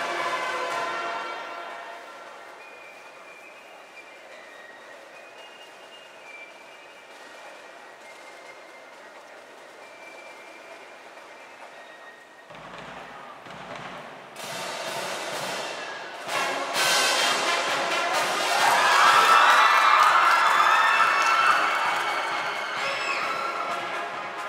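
Marching band of brass and percussion playing: a loud chord fades within the first two seconds into a quiet passage of soft held notes, then drums come in about halfway and the full brass builds to a loud climax before easing slightly at the end.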